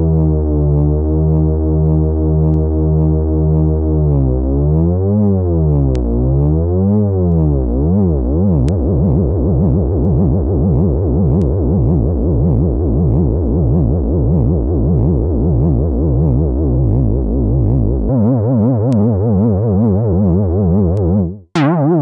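Cherry Audio Minimode, a software Minimoog, holding one note whose pitch is modulated by oscillator 3 running as an LFO. It starts steady, then swoops slowly up and down, and the wobble speeds up into a fast, rough warble as oscillator 3's frequency is turned up. Near the end the sound drops out briefly and comes back.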